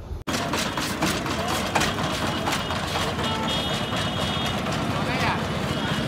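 Busy street ambience: background voices and traffic, with frequent short clicks and taps and a brief high-pitched tone a little after the middle.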